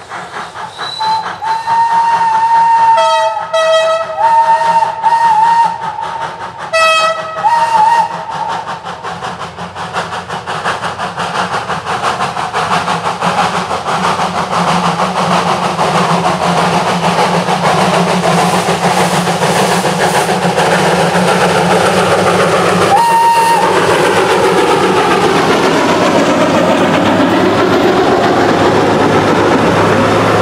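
A heritage train sounds its whistle in several blasts that waver in pitch. It then comes closer and passes, with its running noise and the wheels clattering over the rail joints growing louder. There is one last short blast as it goes by.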